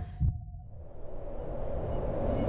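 A low thump, then a rush of noise that swells steadily louder across the two seconds.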